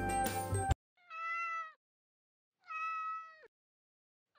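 Background music that cuts off abruptly under a second in, followed by a Singapura cat meowing twice, each meow a steady call of almost a second that drops slightly in pitch at its end.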